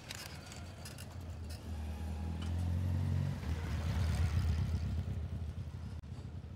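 A road vehicle passing on the street, its low engine rumble building from about a second and a half in and loudest between about three and five seconds.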